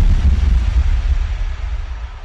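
Deep electronic bass rumble with a fading hiss, the decaying tail of a logo-animation sound effect, slowly dying away.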